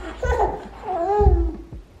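An eight-month-old baby vocalizing in two short, high-pitched calls, each rising and falling in pitch: happy baby noises.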